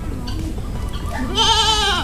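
A goat giving one loud, quavering bleat in the second half.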